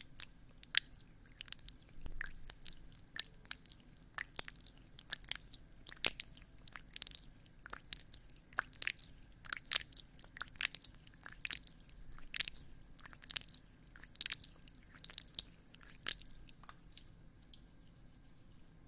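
Close-miked wet, sticky clicks and smacks, irregular and a few per second, made into a binaural ASMR microphone.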